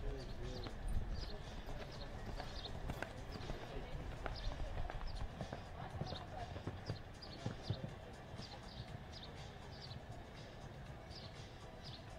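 Hoofbeats of a show-jumping horse cantering on arena footing, falling in a steady rhythm, with voices in the background.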